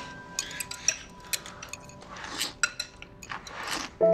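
Chopsticks clicking against a ceramic noodle bowl during hurried eating, with two longer slurps of noodles in the second half.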